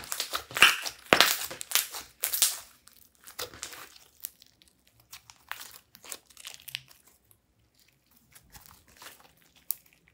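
Clear slime with eyeshadow worked into it, being kneaded and squeezed by hand. It makes sticky crackling and popping, dense and loud for the first few seconds, then sparser and fainter pops as the slime is stretched out.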